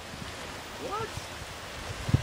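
Steady wind and lapping surf at the shoreline, an even rushing noise.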